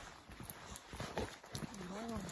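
Footsteps crunching irregularly on a gravel track. Near the end a short, wavering, low voiced sound comes in.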